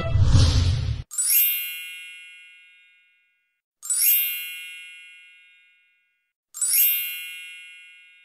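Intro music cutting off about a second in, then a bright chime sound effect struck three times, about two and a half seconds apart, each ringing and fading away over about two seconds.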